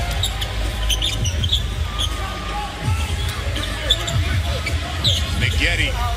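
Basketball being dribbled on a hardwood court, set against a steady arena crowd rumble and faint voices.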